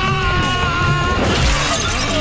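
Loud action-film background score with held, guitar-like tones, and glass shattering about one and a half seconds in as a man is smashed down onto a breaking surface.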